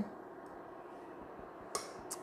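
Quiet kitchen room tone, broken near the end by one short clink of a small glass dish as a wire whisk scrapes into it.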